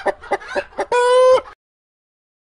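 Domestic hen clucking: a quick run of short clucks, then one longer, louder drawn-out cackle note, after which the sound cuts off abruptly.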